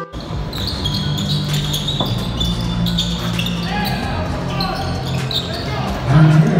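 Live basketball game sound in an indoor arena: a ball bouncing on the hardwood court, short high squeaks of sneakers, and voices.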